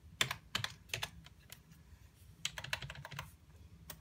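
Computer keyboard keys typed in two quick runs of clicks, each about a second long, with a short pause between, as a web address is entered into a browser's address bar.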